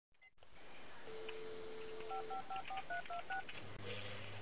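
Telephone dial tone held for about a second, then seven quick touch-tone beeps as a number is dialed on the keypad.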